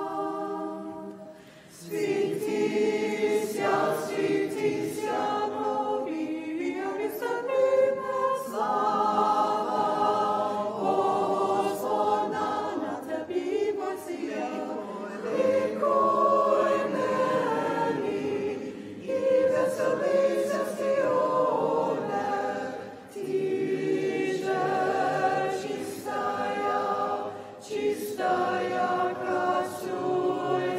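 A group of voices singing a cappella in Byzantine chant: the hymn to the Theotokos that follows her commemoration in the Divine Liturgy. Held, sustained phrases with a short breath break about a second in.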